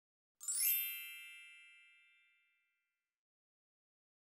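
A single bright chime sound effect: a quick cascade of bell-like tones from high to lower, ringing out and fading over about two seconds.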